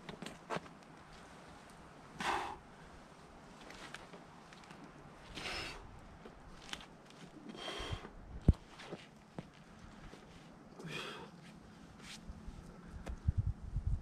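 A bouldering climber's sharp exhalations, four short puffs two to three seconds apart, as he strains on an overhang. A sharp knock a little past the middle, likely a hand or shoe on the rock, and a low rumble near the end.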